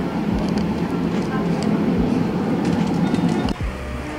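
Steady low hum of a shop interior with indistinct voices and small clatters, cutting off abruptly about three and a half seconds in.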